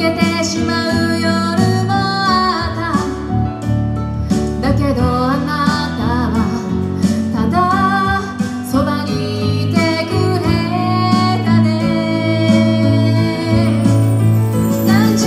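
A woman singing live into a handheld microphone over instrumental accompaniment, with the melody held in long, wavering notes.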